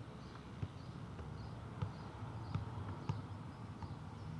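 Football being juggled on foot and knee: a series of short dull thuds at uneven intervals, about one every half second to second, over steady tape hiss and hum.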